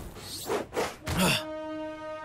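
Animated-series soundtrack: a few short sound effects with sliding pitch in the first second and a half, then a held musical chord of steady tones.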